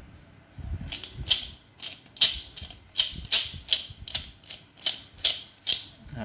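Steel Sanki F-style bar clamp being worked by hand, its metal jaw and screw parts clacking: a run of sharp metallic clicks, two or three a second, starting about a second in.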